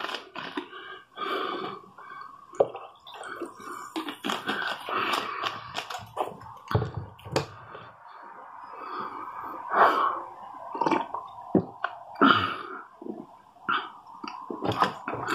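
Small clicks and mouth noises of a person tasting a soft drink: sips, swallows and lip smacks. A plastic bottle cap is handled near the start.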